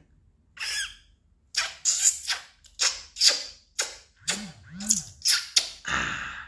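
A woman making a dozen or so short, breathy mouth sounds in quick, uneven succession, two of them with a brief voiced rise and fall in pitch.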